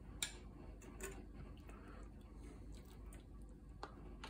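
A few faint clicks and clinks of kitchen utensils being handled: a sharp click just after the start, a softer one about a second in, and a clink near the end as a stainless slotted spoon is taken up to scoop peppers from the pot.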